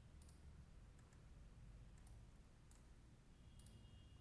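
Faint computer mouse clicks, a handful spread over a few seconds, over near-silent room hum.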